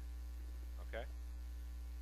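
A steady low hum runs under the recording, with one short spoken word from a man about a second in.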